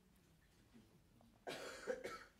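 Near silence, then about a second and a half in, a single short cough.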